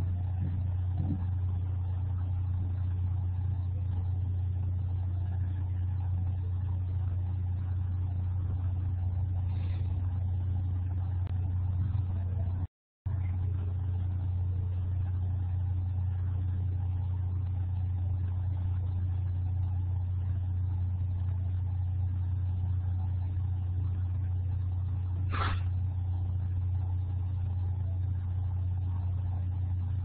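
A steady low hum with faint background noise, cutting out completely for a moment about 13 seconds in; a brief faint click sounds near the end.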